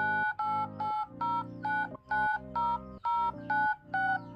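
Smartphone dial-pad touch tones (DTMF) keyed in quick succession: a rhythmic string of short two-tone beeps, about three a second, changing in pitch from key to key like a tune, with a lower hum under each beep.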